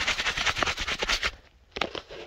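Handling noise from a phone held with its lens covered, fabric and hand rubbing against it: dense crackling and scraping for the first second or so, then a pause and a single knock near the end.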